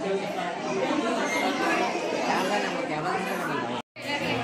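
A crowd of people chattering, many voices talking over one another at once. The sound drops out suddenly for a moment just before the end.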